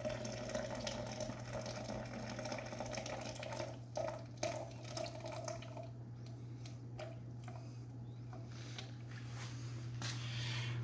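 Hot water poured from an electric kettle into a French press of coffee grounds: a steady stream that eases to a thinner trickle about six seconds in, as it is topped up to 450 ml.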